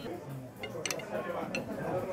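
A fork cutting into meatballs on a plate, giving a few light clicks of metal against the plate, over background chatter.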